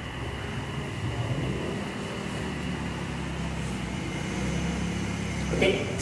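A steady low rumble and hum with a faint high whine, slowly getting a little louder.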